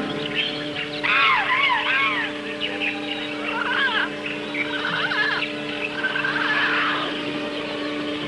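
Jungle soundtrack of bird calls: clusters of quick, arching chirps and whistles come again and again over a steady, low held tone of background music.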